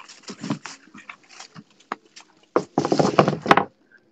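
A leather wallet handled right against the phone's microphone: scattered rustles and clicks, then a louder stretch of about a second of rubbing and scraping a little past halfway.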